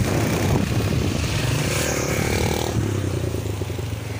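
Motorcycle engine running steadily while riding along a road, with wind rushing over the microphone.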